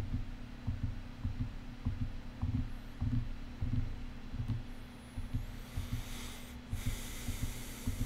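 Background music bed heard almost only in its low end: a muffled, uneven bass beat of about two pulses a second over a steady hum. A soft high swoosh rises about three quarters of the way through.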